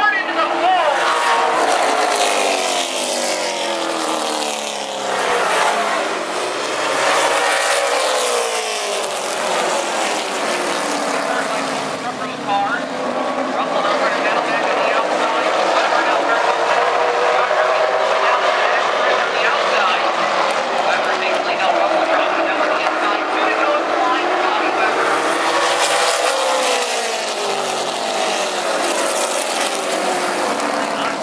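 A pack of late model stock car V8 engines running at race speed, the pitch rising and falling as car after car passes close by.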